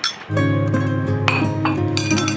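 A ceramic bowl clinks against dishes right at the start. About a quarter second in, instrumental background music with a steady bass comes in and is the loudest sound, with a few more light clinks of dishware over it.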